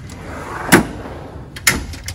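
Steel drawer of a Snap-on Master Series tool box sliding shut and closing with a loud metal bang, with a second sharp knock about a second later.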